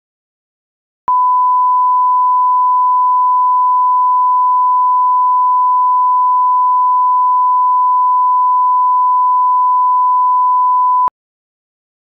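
A steady 1 kHz line-up test tone (a pure sine tone) accompanying television colour bars. It switches on abruptly about a second in, holds at one constant pitch and level for about ten seconds, and cuts off abruptly near the end, with dead silence before and after.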